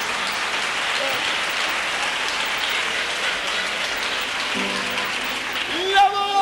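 Audience applauding steadily. Near the end a pitched melody starts up over the applause.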